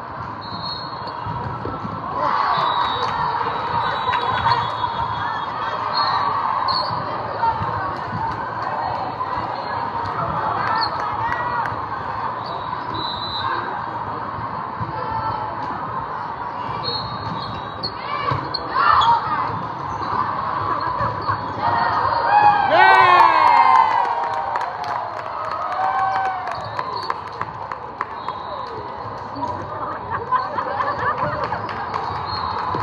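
A volleyball rally on an indoor sport court: the ball is struck and bounces repeatedly, with players' voices and a steady murmur of crowd and other matches in a large, echoing hall. The busiest, loudest moment comes about three quarters of the way through, with a quick run of sharp pitched squeaks and calls.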